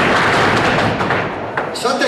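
A group of boys stamping their boots on the floor together in a gaucho foot-stamping (sapateio) step, a dense, fast clatter of many stamps that stops near the end.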